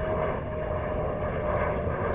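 A steady, distant motor drone holding one tone, over a low rumble.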